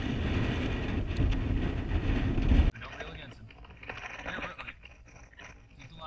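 Wind buffeting the microphone over open water, cut off suddenly under three seconds in, followed by much quieter faint water and kayak sounds.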